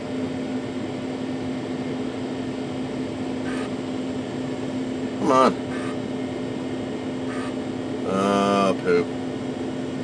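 Steady hum of powered-up computer equipment, an Amiga 500 with its external hard drive spinning, carrying one constant low tone. A brief vocal murmur comes about halfway and a longer hummed note near the end, with a couple of faint clicks between.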